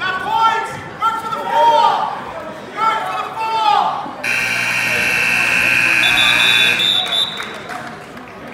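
Voices calling out, then about four seconds in a steady wrestling scoreboard buzzer sounds for about three seconds, signalling time up.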